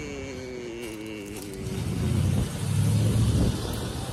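A car passing on the street: a low rumble that builds about a second and a half in and drops away shortly before the end.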